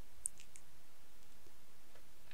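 Three quick computer mouse clicks about a quarter second in, the first the loudest, over a faint steady hiss.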